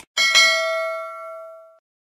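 Bell-icon notification sound effect: a short mouse click, then a bright bell ding struck twice in quick succession, ringing with several steady tones and fading out over about a second and a half.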